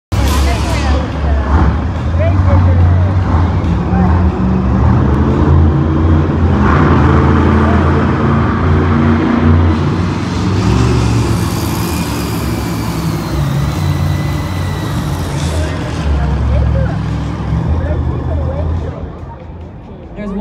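Monster truck engines running loud and revving as the trucks race across the arena floor, a deep rumble that swells and drops with the throttle and dies down near the end. Crowd voices can be heard underneath.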